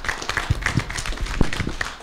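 Audience applauding: a steady patter of many hand claps.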